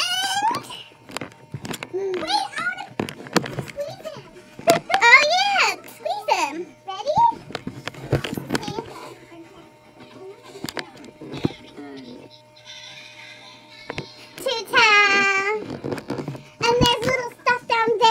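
Children's high-pitched voices, calling out and squealing in several loud bursts with quieter chatter between, and a faint steady tone in the middle stretch.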